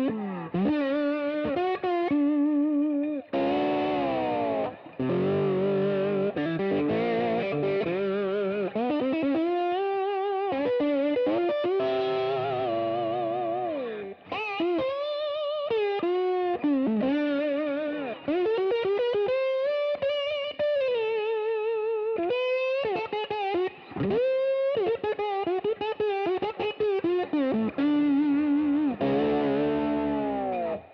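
Gibson Memphis ES-335 semi-hollow electric guitar played through an amp with the toggle in the middle position, both humbucker pickups on together. The playing is mostly single-note lead lines with string bends and wide vibrato, with fuller chord playing in the first half.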